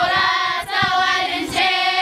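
A group of young girls reciting the Quran aloud in unison, many children's voices chanting together in short held phrases.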